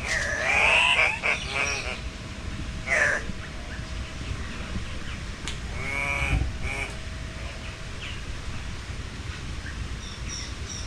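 Birds in an aviary calling: a loud, bending call in the first second or so, another near three seconds in, and a harsher call about six seconds in.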